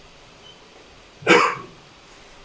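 A single short, sharp vocal burst from a person, about a second and a quarter in.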